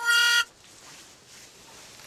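A single loud horn-like tone, steady in pitch and lasting about half a second, right at the start, then only faint room sound.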